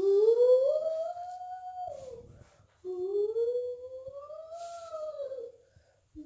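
Two long howls, each rising and then falling in pitch. The first is the louder; the second starts about a second after the first ends and lasts a little longer.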